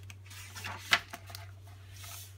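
A page of a picture book being turned by hand: a papery rustle ending in a sharp flap about a second in, followed by a few small ticks. A steady low hum runs underneath.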